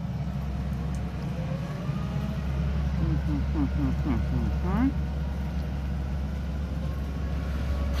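Hyundai excavator's diesel engine running with a steady low rumble as the machine moves slowly past. Short voice-like sounds come about three to five seconds in.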